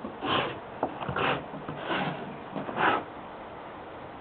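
Four short, breathy sniffs, a little under a second apart.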